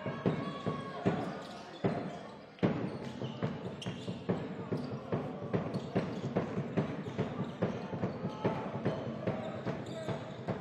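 Court sound of a basketball game: a basketball bouncing on the hardwood floor in irregular thuds, mixed with shoe noise and players' voices. One hit stands out, about two and a half seconds in, after a short lull.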